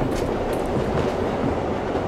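Subway train running, heard from inside the car: a steady noise of the moving train.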